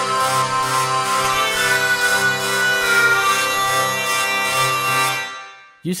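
Sampled hurdy-gurdy played from a keyboard: a steady drone under a moving melody line, with the trumpet string buzzing in a regular rhythmic pulse, driven by the keyboard's aftertouch. It dies away near the end.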